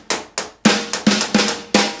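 Electronic drum kit playing a rock groove: eighth notes on a loose, half-open hi-hat, snare backbeats on two and four, extra snare notes in between, and bass drum, in a steady stream of strikes about three a second.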